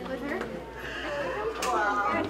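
Indistinct chatter of several people talking at once in a crowded room, with a higher-pitched voice near the end.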